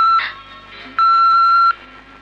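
Electronic beeper sounding a steady high single-pitched beep, about three-quarters of a second long, repeating every second and a half: one beep ends just after the start and the next comes about a second in.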